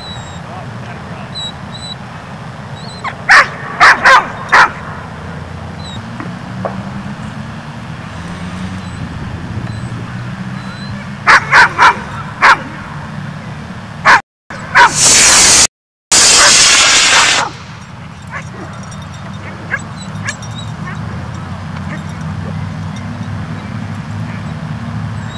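A dog barking in two quick runs of about four barks each, a few seconds in and again about halfway through. Soon after comes a loud rush of noise lasting about three seconds that drops out briefly twice.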